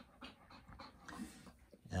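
A goldendoodle panting quietly while in labour and in pain.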